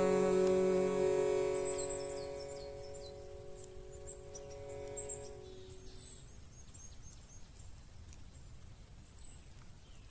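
The last held note of a freestyle vocal chant, steady in pitch with its overtones, dying away over the first six seconds. Birds chirp with quick falling calls over the fading note, and faint outdoor background remains afterwards.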